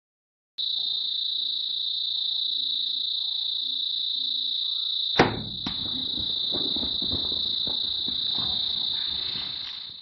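A steady, high-pitched drone of insects in the bush. About five seconds in comes the sharp snap of a compound bow shot, with a smaller knock half a second later. It is followed by scuffling, knocking hooves as zebras bolt over dry ground.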